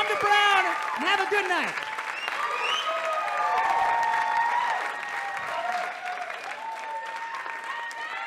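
Audience applauding and cheering, with shouted whoops strongest in the first two seconds and the applause easing off over the last couple of seconds.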